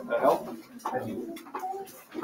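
Indistinct, low talking, voices too faint or mumbled to make out words.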